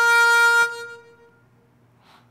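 Solo harmonica holding one long note that breaks off a little over half a second in and dies away, leaving a quiet pause between phrases.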